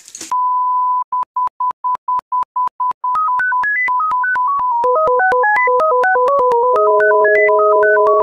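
Electronic test-tone beep that goes with TV colour bars: one steady high tone, then a run of short on-off beeps. About three seconds in it turns into a quick beeping tune that steps up and down in pitch, with a lower line and two held low tones joining under it in the second half.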